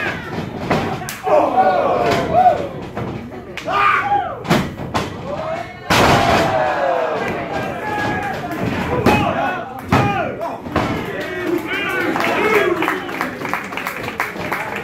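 Wrestlers' bodies hitting a wrestling ring's canvas mat, several thuds with the loudest about six seconds in, amid a small crowd shouting and calling out.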